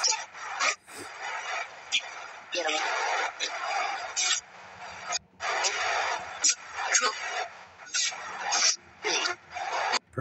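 Choppy bursts of radio static with broken snatches of voices, cutting in and out a couple of times a second: a spirit box sweeping through radio stations.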